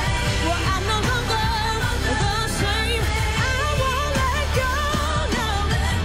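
A woman singing a gospel song live, her voice bending up and down in vocal runs, over a live band.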